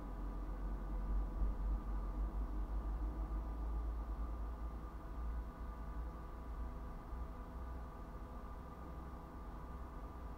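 Steady low rumble with a faint steady hum over it, picked up by a dashcam inside a stopped car; no distinct event stands out.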